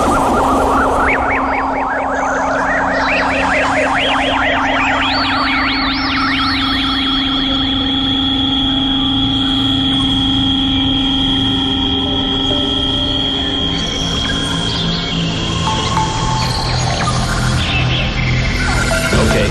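Ambient electronic synthesizer music: wavering tones climb steadily in pitch over the first several seconds, then settle into long held notes over a steady low drone.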